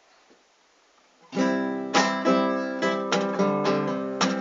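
Nylon-string classical guitar starting to play about a second in: a first chord rings, then plucked chords and notes follow at about three a second.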